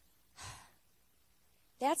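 A woman gives one short, soft sigh into a handheld microphone about half a second in, then starts speaking near the end.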